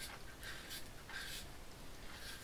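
Faint, short scraping strokes of a DOC open-comb double-edge safety razor cutting stubble through shaving gel lather on a scalp, a few passes in quick succession.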